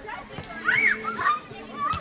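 A player's high-pitched shouted call about half a second in, rising and falling in pitch, then a sharp slap of a hand striking the volleyball near the end.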